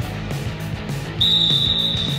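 A referee's whistle: one long steady blast starting a little past halfway, the loudest thing here, over background rock music with guitar.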